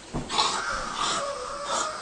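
A person breathing hard with wheezy breaths, about three in two seconds.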